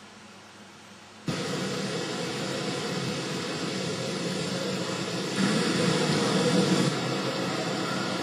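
Faint hiss, then about a second in a sudden cut to a steady rushing noise of outdoor camcorder sound, with no tones or rhythm in it.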